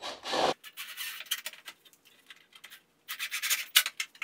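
Scratchy rubbing and handling noises: a cordless drill and hands moving against the plywood of a long beam box, with a denser scraping stretch about three seconds in and a sharp knock just before the end. The drill's motor does not run.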